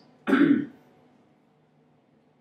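A man clears his throat once, briefly, about a quarter of a second in.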